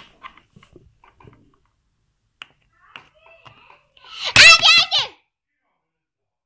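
A child's loud, high-pitched squeal lasting about a second, wavering in pitch, about four seconds in. Before it, faint light taps of small plastic toy figures on a wooden tabletop.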